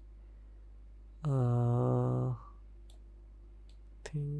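A man's drawn-out hesitation sound, held on one steady pitch for about a second, followed by a couple of faint computer mouse clicks, over a steady low hum.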